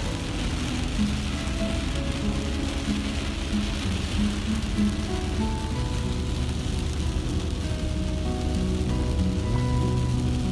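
Heavy rain hitting a moving car's windshield and body, with a steady hiss of rain and wet-road noise, under background music playing a simple melody.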